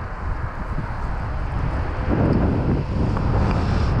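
Strong wind buffeting the microphone over the steady rush of water pouring across a concrete spillway, with a heavier gust about halfway through.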